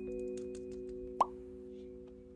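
Soft background keyboard music holding sustained chords, with one short, rising plop about a second in.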